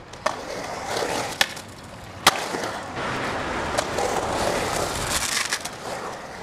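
Skateboard wheels rolling on a concrete bowl, the rolling noise building as the board carves up the wall, with several sharp clacks of the board and trucks, the loudest a little past two seconds in. A hissing scrape of the wheels sliding sideways in a power slide comes near the end.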